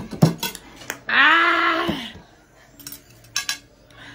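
Metal chopsticks clicking against plates, then a loud, drawn-out wordless cry about a second long from a woman reacting to the chili heat of the noodles. A few more chopstick clicks follow.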